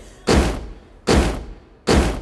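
Three heavy boot stomps about 0.8 s apart, each booming and dying away in a long echo.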